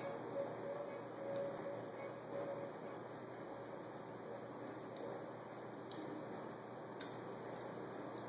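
Quiet room tone: a steady low background hiss, with a faint hum in the first few seconds and a faint click about seven seconds in.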